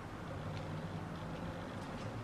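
Steady low room hum with a few faint light ticks as a tarot card is laid down on a table.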